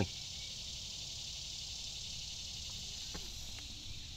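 Steady, high-pitched buzz of an insect chorus, with a faint low rumble beneath it and a couple of faint ticks about three seconds in.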